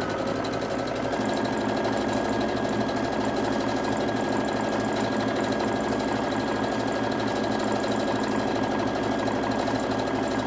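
Electric sewing machine running steadily as it stitches a seam through layered cotton patchwork, speeding up slightly about a second in.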